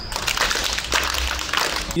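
Audience clapping together, many hands at once.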